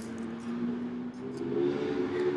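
A small blade scratching and clicking at the plastic wrap of a phone box as it is slit open, under low humming that holds a few notes, changing pitch about every second.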